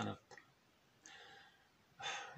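A man's voice says one word, then pauses, taking a soft breath about a second in, with a small mouth click just after the word.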